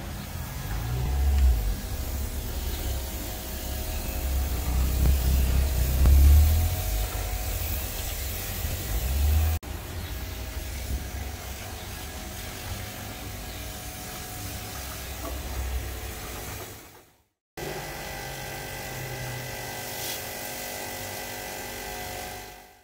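Electric pressure washer running with a steady motor whine while its jet sprays water onto a truck. A heavy low rumble sits under it for roughly the first half.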